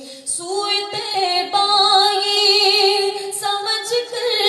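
A woman singing a naat, an Islamic devotional song, unaccompanied, holding long notes with vibrato. She breaks off briefly for a breath just after the start.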